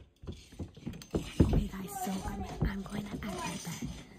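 Faint, muffled children's voices after about a second of near quiet, with a few clicks and knocks.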